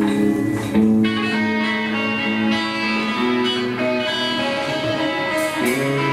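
Live rock band playing an instrumental passage, electric guitars carrying long held notes that shift pitch every second or so, with a strong new note struck about a second in.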